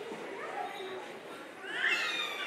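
Indistinct murmur of children's and audience voices in a hall. Near the end comes a louder, high-pitched vocal cry that rises in pitch.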